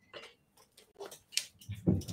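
A few faint, irregular clicks and small handling noises, with a louder soft thump near the end.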